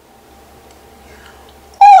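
Faint rustle of a picture book's paper page being turned over a low steady hum. Near the end a voice starts speaking loudly in a high, gliding character voice.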